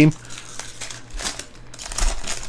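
Foil wrapper of a 2023 Panini Score football card pack crinkling as it is torn open by hand, with a few sharper crackles in the second half.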